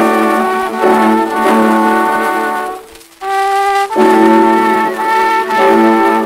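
Early acoustic orchestra recording played from a 1902 Columbia disc record, sustained melodic phrases over a faint surface hiss. The music breaks off briefly about three seconds in, then resumes with a held note.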